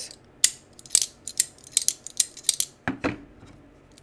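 Folding pocketknife flicked open and shut over and over, its blade snapping against the stop and detent in a quick run of about ten sharp, clicky clacky metal clicks over two and a half seconds.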